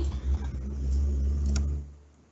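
A low, steady rumble through a video-call microphone, fading out near the end.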